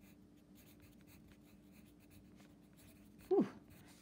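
Faint scratching of a wooden pencil writing a word on a paper workbook page. Near the end, a short breathy "whew".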